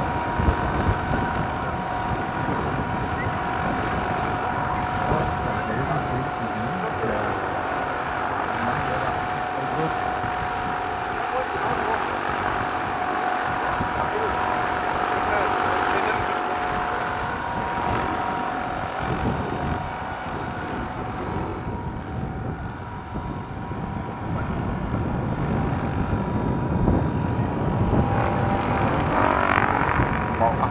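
Two large electric-powered scale model tandem-rotor helicopters (1/7-scale CH-113 Labrador / CH-46 Sea Knight, Kontronik Pyro 850 motors, 2.2 m rotors) flying together: a steady high whine from the drives over continuous rotor noise. It eases slightly a little past two-thirds through and grows louder near the end as one comes closer.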